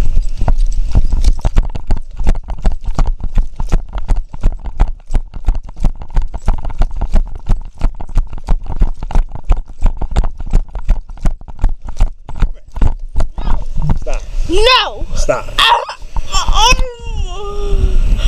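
Running footsteps on packed snow heard through a body-worn camera, each stride a sharp jolt, about three a second. From about fourteen seconds in, a high voice cries out several times.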